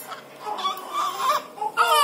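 Newborn baby fussing in short broken cries, then breaking into a loud cry near the end.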